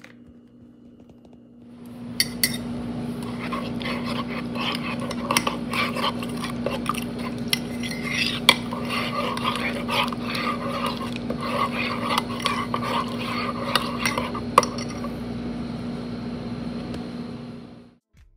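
Spoon stirring hot chocolate in a ceramic mug, scraping round and clinking repeatedly against the sides. It starts about two seconds in and stops near the end.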